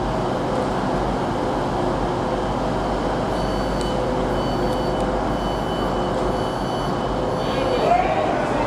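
Steady rumble of a diesel train idling, with thin high-pitched tones that come and go from about three seconds in.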